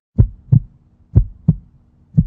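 Heartbeat sound effect: deep thumps in lub-dub pairs, two double beats about a second apart.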